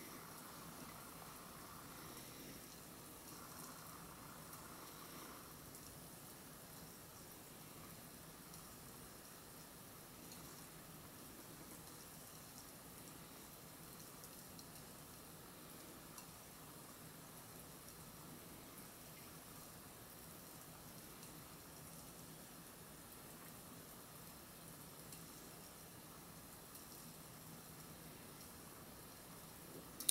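Faint, steady fizzing of calcium metal reacting with water, a steady release of small hydrogen bubbles, heard at the edge of near silence.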